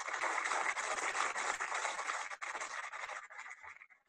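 Audience applauding, heard through a video call's shared-screen audio; it cuts off abruptly near the end.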